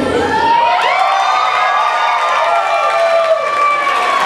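Audience cheering and shrieking, many high voices overlapping. Dance music cuts off about half a second in.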